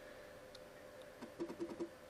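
3.5-inch 1.44 MB floppy drive head seeking: a quick run of about six faint ticks a bit over a second in, over a faint steady hum, as the game reads from the disk before answering the command.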